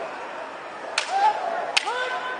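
Two sharp cracks of bamboo kendo shinai striking, about a second in and again shortly before the end.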